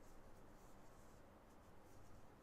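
Near silence with faint, soft rustling of a metal crochet hook drawing wool yarn through single crochet stitches.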